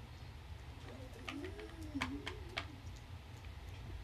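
Quiet room tone with a faint, wavering hum of a voice from about a second in, lasting a little under two seconds, and a few light clicks.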